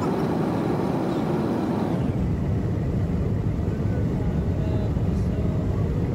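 Steady road and engine rumble heard inside the cabin of a car driving at speed on a highway.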